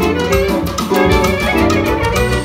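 Live band music: a clarinet playing the melody with violin and keyboard, over a steady low beat.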